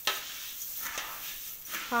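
Dry spice seeds and leaves being stirred and tossed by hand in a large metal pot: a rustling, hissing swish that swells and fades with each stroke, with a couple of light clicks against the pot about a second apart.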